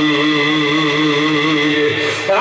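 A man's voice chanting one long held note in the sung, melodic style of a Bengali waz sermon, wavering slightly in pitch. The note dips and breaks off right at the end.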